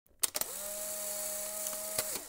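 Camera sound effect: a few quick clicks, then a steady motorised whir for about a second and a half that stops.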